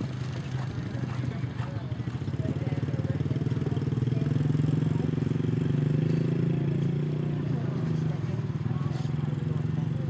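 A small engine running steadily with a low drone, growing louder through the middle and easing toward the end.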